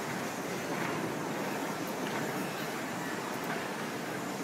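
Large horizontal stator coil winding machine running, its winding head turning and drawing wire onto the coil forms: a steady mechanical whirr with a few faint ticks.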